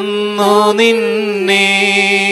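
A single voice chanting a Malayalam prayer, holding long syllables on a nearly level pitch with slight bends.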